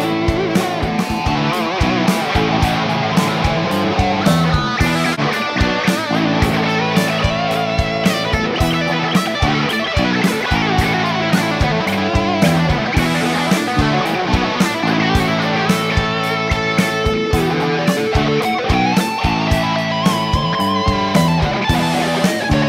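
Les Paul-style electric guitar with overdrive playing a lead line with string bends, run through a multi-effects unit, over a backing track with bass and a steady beat.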